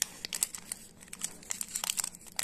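Shiny red foil twist wrapper of a chocolate liqueur-cherry praline being untwisted and pulled open by fingers, crinkling in quick irregular crackles.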